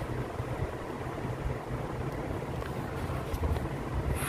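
Steady low background rumble with a hiss and no distinct events.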